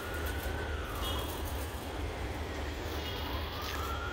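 A wailing siren slowly rising and falling in pitch, peaking twice, over a steady low rumble.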